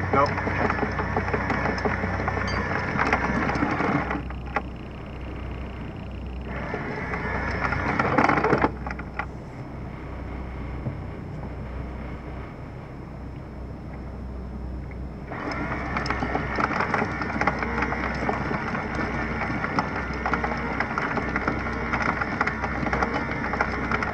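Anchor windlass hauling in chain, the chain rattling and clattering through it in three runs with quieter pauses between, about four seconds, two seconds and the last nine seconds. Under it the boat's engine idles in neutral with a steady low hum.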